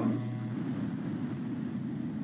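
Steady low background hum and hiss from a video-call audio feed, with no distinct event.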